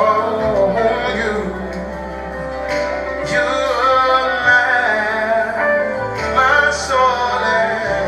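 Live gospel music: singers' voices over a band, with long held bass notes that change every few seconds.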